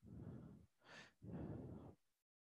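Faint breathing close to the microphone: two breaths, with a short hissing intake about a second in between them.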